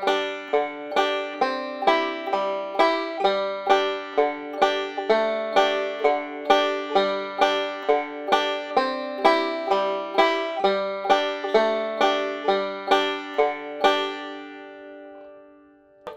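Five-string banjo picked with thumb and finger picks in a backup pattern: a single inner string alternating with a pinch of thumb and middle finger, in a steady rhythm of about four notes a second through G, C and D chords. Near the end the last chord is left ringing and fades away.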